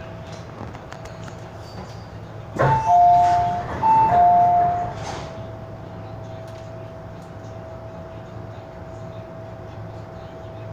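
Two-note falling electronic chime from an MTR M-Train's on-board public-address system, sounded twice in quick succession with a knock at its start. Under it runs the steady interior noise of the train car and a faint steady high tone.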